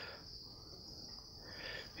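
Faint, steady high-pitched tone over quiet room tone.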